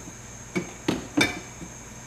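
Glass mason jars being shifted on a refrigerator shelf, knocking against each other and the shelf: three short knocks in the middle.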